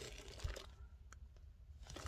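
Faint, soft handling noise of a cake of acrylic yarn being squeezed and turned in the hands, with a couple of small ticks.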